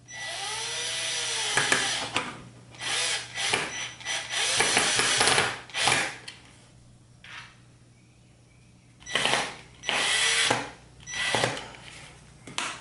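Power drill driving screws through a plastic chair back into a PVC board shelf, in a series of short runs with the motor speeding up and winding down, and a pause of a couple of seconds midway.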